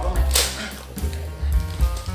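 Factory-sealed plastic toy packet torn open by hand: one sharp rip about half a second in, then a few smaller crinkles of the plastic.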